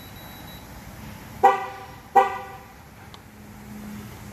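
2012 GMC Yukon XL's horn chirping twice, two short honks about 0.7 s apart. This is the truck confirming that the last tire pressure sensor, the left rear, has been learned and that the TPMS relearn is complete.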